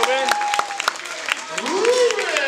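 Spectators in a gymnasium clapping, with scattered claps and voices calling out and cheering over them.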